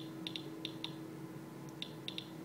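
SE International Inspector EXP Geiger counter with a pancake probe clicking at random intervals, about seven sharp clicks bunched in the first second and again near the end, as the probe sits against a radioactive cut-crystal pitcher and counts its emissions. A faint steady hum lies underneath.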